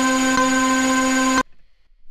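Ableton Live 'Collateral Damage' synth lead preset sounding one steady held note near middle C, with a slight hitch about half a second in. The note cuts off suddenly about a second and a half in.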